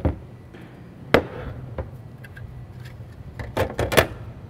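Metal industrial display hardware being handled on a tabletop: one sharp knock about a second in, a lighter tap after it, then a quick cluster of clicks and knocks near the end as the computer module is pushed onto the new screen.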